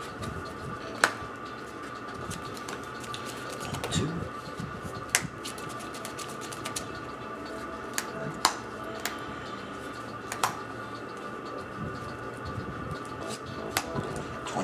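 Trading cards being handled and set down on a playmat: about half a dozen short, sharp clicks and taps scattered through the stretch, over a faint steady background hum.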